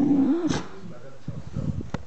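Beagle puppy making a wavering, whiny grumbling sound in play, which trails off about half a second in. It is followed by a sharp click and soft low thumps as the puppy squirms on the rug.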